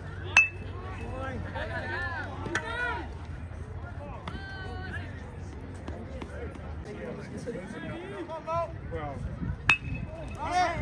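Metal baseball bat striking a pitched ball: a sharp ringing ping about half a second in, and a second ping just before the end. Players and spectators shout and chatter in between.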